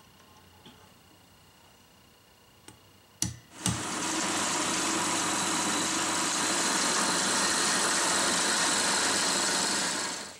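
About three seconds of quiet room tone, then a click or two and a drill press motor starting and running steadily as the bit bores the bridge stud holes into the wooden guitar body, until the end.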